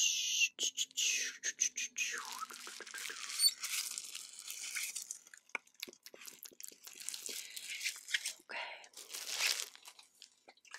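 Close-miked ASMR trigger sounds: quick dry mouth clicks and crackly, crinkling rubbing of hands near the microphone, with breathy hiss between them.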